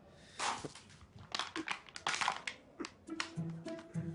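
Plastic wrappers rustling and crinkling in a dense run of sharp clicks as a man drops onto a sofa and handles a packet, over background music; short plucked string notes come in near the end.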